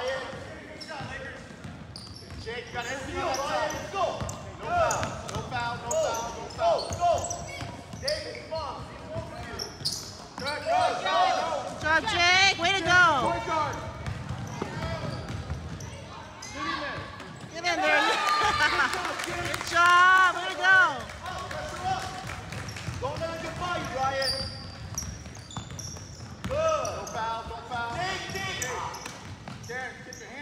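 A basketball being dribbled on a hardwood gym floor during a youth game, with indistinct shouting voices from players and sideline, loudest about twelve and twenty seconds in.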